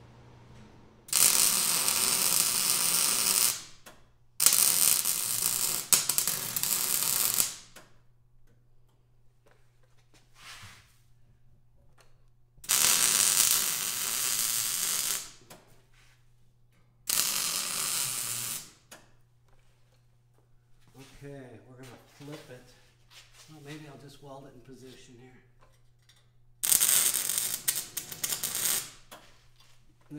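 Wire-feed (MIG) welder laying five short weld beads on steel, each a crackling sizzle lasting a couple of seconds and starting and stopping abruptly. A steady low hum sits underneath.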